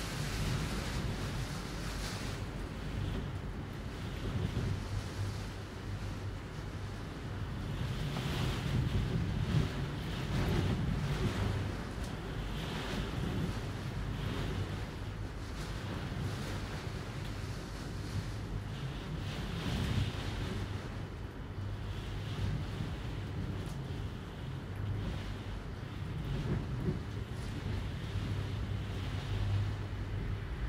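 Ocean surf washing in and out in slow swells, with wind, over a low steady hum.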